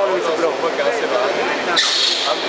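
Voices talking, then near the end a short, sharp hiss from the injection moulding machine. The onlookers call it a strange sound and doubt that it was an air or vacuum release.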